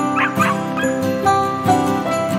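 A dog barking twice in quick succession, over background music with jingle bells.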